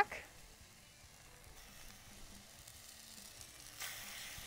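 Chicken breasts sizzling as they sear in hot oil in a Rockcrok ceramic pot, faint at first; near the end another breast goes into the pan and the sizzle gets louder.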